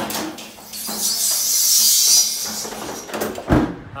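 A firefighter sliding down a brass fire pole: a loud hiss of friction lasting about a second and a half, with a few knocks, then a heavy thump near the end.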